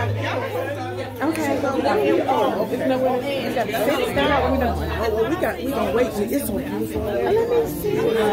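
Several women's voices talking over one another: overlapping chatter in a large room. A low hum comes and goes underneath.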